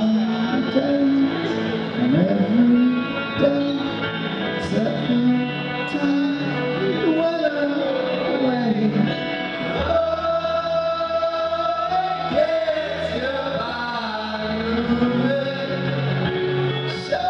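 Rock band playing live in a large hall, heard from the audience: a male voice sings over guitar, keyboards and drums. A low bass part comes in about ten seconds in.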